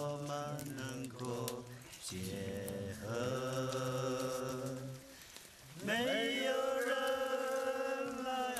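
A man singing a slow love song unaccompanied, in long drawn-out notes. There is a short break at about two seconds and a near-pause at about five seconds, after which the melody comes back higher.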